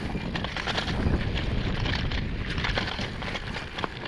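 Trek mountain bike ridden over a dirt forest trail: tyres rolling on dirt and dry leaves, with many small rattles and knocks from the bike over the bumps, and wind on the microphone.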